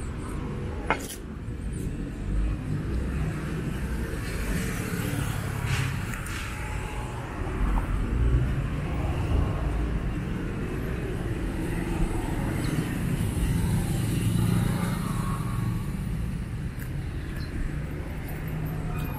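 Road traffic from cars and motorcycles going by on a city avenue, a steady rumble that swells as vehicles pass, most loudly around the middle and again later on.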